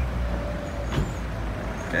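City street traffic: a steady low rumble of road vehicles, with one short click about a second in.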